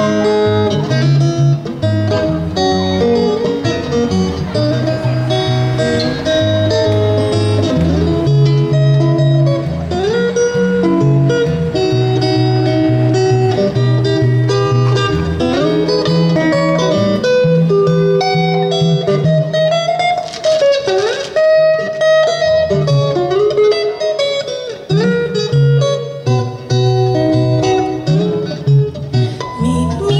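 Electric guitar played alone through an amplifier, an instrumental passage with a stepping line of low bass notes under higher chords and melody notes.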